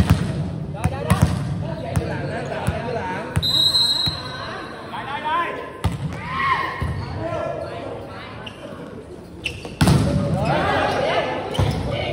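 Volleyballs being struck and bouncing on a hard court floor, with players shouting and calling. A short whistle blast comes about three and a half seconds in, then a serve and a rally of hits with more shouts near the end.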